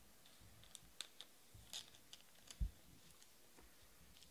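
Faint clicks and taps of trading cards being handled and set down on a table, with a soft low thump a little over halfway through.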